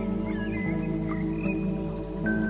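Ambient instrumental meditation music of layered sustained tones, with short chirping animal calls scattered over it.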